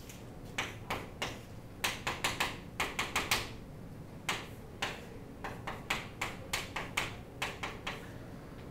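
Chalk writing on a blackboard: a run of quick, irregular taps in uneven clusters, thickest a couple of seconds in, with a short pause near the middle before the taps resume.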